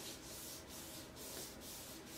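A damp tea bag wiped lightly back and forth over cardstock, a faint soft rubbing, staining the paper with cold tea to make it look old.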